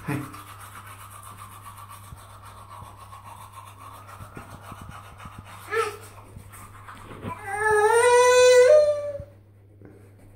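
A young child's voice: a faint drawn-out high tone, a short cry, then one loud long vocal call about a second and a half long near the end, rising slightly in pitch.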